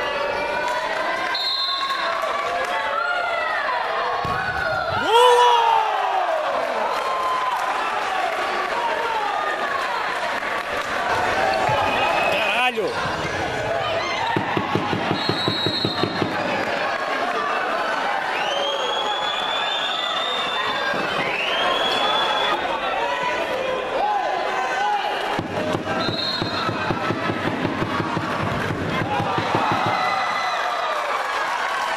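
Futsal match sound in an echoing sports hall: players and spectators shouting, the ball being kicked and bouncing on the court, and a few short high whistle blasts. Twice there is a stretch of fast, even tapping.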